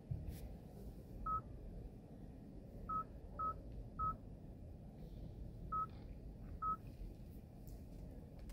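Short electronic beeps at one pitch from the Kia Carnival Hybrid's instrument cluster, six in all at irregular intervals. They acknowledge the drive mode being switched from Eco to Sport and the cluster display changing pages.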